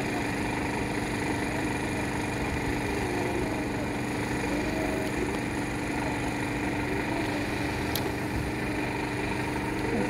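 Vauxhall Corsa's engine running steadily at idle, with one short click about eight seconds in.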